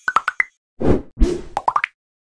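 Animated-graphics sound effects: a quick run of short pops at the start, two whooshes in the middle, then another quick run of pops, as on-screen icons and labels pop into place.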